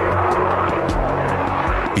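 Fighter jet engine roar mixed with background music that has a low, pounding drum beat.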